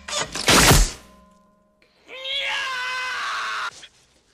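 A loud crash of a blow or fall about half a second in, followed after a short pause by a man's long, high-pitched scream held at a steady pitch for about a second and a half.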